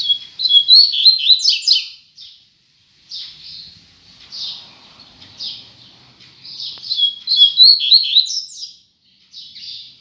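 Male double-collared seedeater (coleiro) singing: two short, fast phrases of high, sliding notes, one at the start and one about seven seconds in, with softer single chirps in between.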